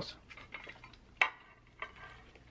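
Faint clicks and taps from a glass sauce bowl being handled on a plate, with one sharper click about a second in.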